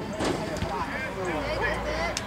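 Indistinct voices of players and spectators calling out across the soccer field, with a few short sharp knocks and a low rumble late on.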